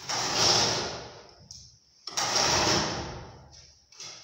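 Demolition noise from a timber ceiling structure being pulled down. There are two loud, rough crashing and scraping sounds about two seconds apart, each dying away over a second or so.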